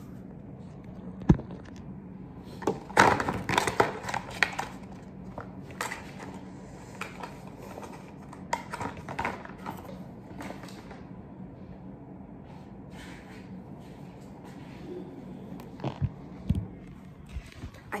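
Belongings being handled and packed: a sharp knock about a second in, then bursts of rustling and clattering for several seconds, and a few more knocks near the end, over a steady low hum.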